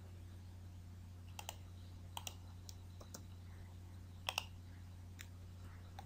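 A handful of scattered clicks from a computer mouse and keyboard as commands are picked and typed, over a steady low hum.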